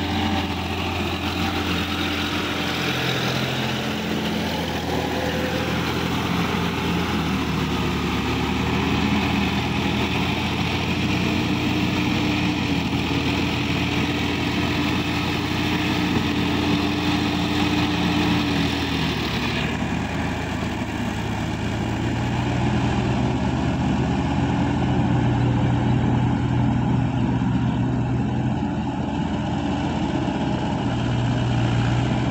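Diesel engine of a Sonalika DI-50 RX tractor running under load while it pulls a rotavator through a flooded paddy, its pitch rising and falling with the throttle. About two-thirds of the way through the sound turns suddenly duller, and a deeper engine note grows stronger towards the end.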